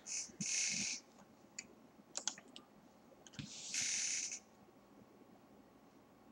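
A few faint clicks and two short soft hisses, each about half a second long, one near the start and one about four seconds in.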